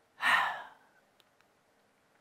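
A woman's audible sigh: one breathy exhale of about half a second that starts strong and fades, followed by two faint mouth clicks.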